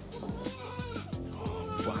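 Background music with thin, wavering newborn baby cries over it.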